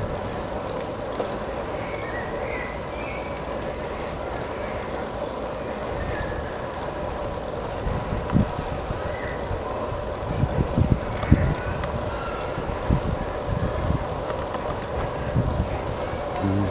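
Bicycle rolling along a smooth asphalt path with a steady rattle and hum. Wind buffets the microphone in low thumps, most of them from about eight seconds in.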